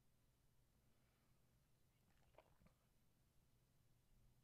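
Near silence: a faint steady low hum, with one faint brief rustle a little over two seconds in.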